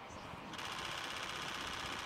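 Rapid burst of camera shutter clicks, starting about half a second in and running on steadily.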